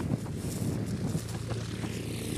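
Outdoor ambience: wind on the microphone over a steady low hum, with a few faint ticks.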